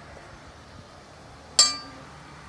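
A metal spoon strikes a stainless steel mixing bowl once, a sharp clink with a short metallic ring, near the end.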